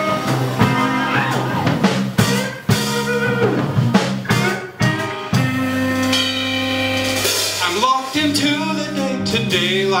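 Live band playing a song's instrumental intro: acoustic guitar, piano, electric bass and drum kit together, with a long held note in the middle.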